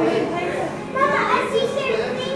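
Children's voices chattering and calling out, high-pitched and without clear words, loudest about a second in.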